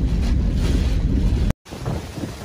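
Typhoon wind buffeting the microphone with driving rain, a heavy low rumble. It cuts off abruptly about one and a half seconds in, and after a brief silence gusty wind comes in at a lower level.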